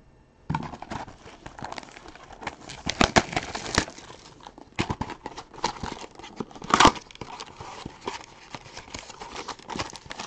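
A 2020 Topps Finest baseball card box being torn open and its wrapped packs pulled out, making irregular crinkling, tearing and rustling of cardboard and foil pack wrappers. The loudest bursts come a few seconds in and again about two-thirds through.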